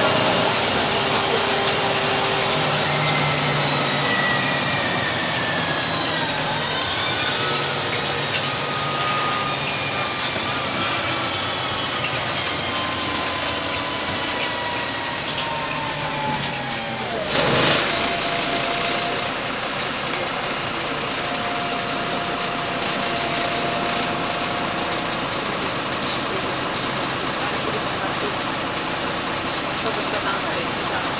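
Inside a Karosa B 961 articulated city bus under way: the engine and drivetrain run steadily, with whining tones that slowly fall in pitch for several seconds as the bus slows. About halfway through comes a short loud hiss, then a steady whine.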